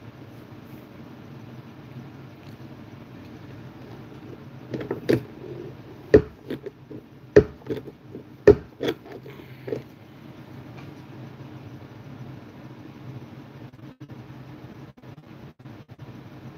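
Steady low hum with a cluster of sharp knocks and clicks about five to ten seconds in, the three loudest roughly a second apart: hands handling something close to the microphone.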